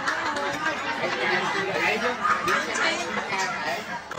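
Several people talking and calling out over one another, a lively chatter of voices.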